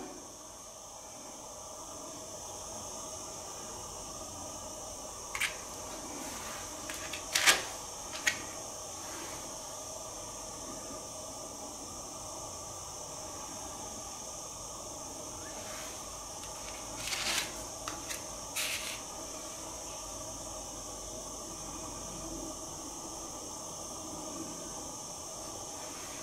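Steady hiss with a few brief taps and rustles of oracle cards being turned over and laid on a cloth-covered table: one cluster about five to eight seconds in, another about seventeen to nineteen seconds in.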